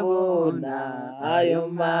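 A voice singing a slow Christian hymn, holding long drawn-out notes that slide in pitch, softer for a moment about a second in.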